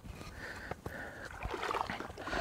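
Faint lapping of small waves in shallow water, with a few soft knocks.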